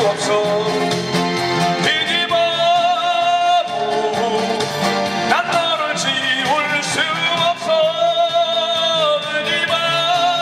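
A man singing a slow song live, holding long wavering notes with vibrato, over acoustic guitar accompaniment.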